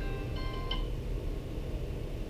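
A mobile phone's musical ringtone playing a short phrase of steady tones about half a second in, then only low room noise.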